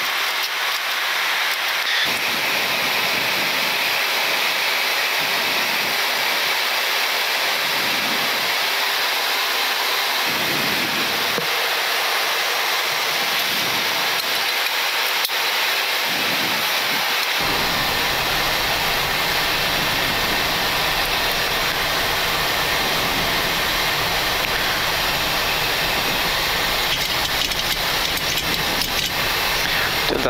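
Steady rushing noise on a Boeing 737-800 flight deck in descent: airflow and engine noise. A deeper rumble joins a little past halfway.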